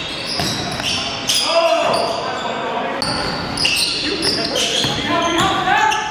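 Basketball game sounds on a hardwood gym floor: the ball dribbling, sneakers squeaking in short high-pitched chirps, and players' voices calling out, echoing in the large gym.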